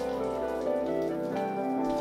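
A shower running, an even hiss of falling spray, under background music of sustained notes.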